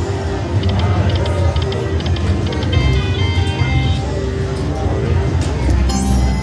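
Buffalo Gold slot machine playing its electronic spin music and short chime tones while the reels spin, over a loud, steady casino din.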